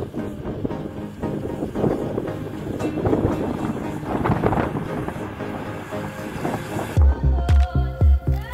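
Strong mountain wind buffeting the microphone during a storm, with music faintly under it. About seven seconds in, a hip-hop music track with a heavy bass beat, two to three beats a second, comes in loudly.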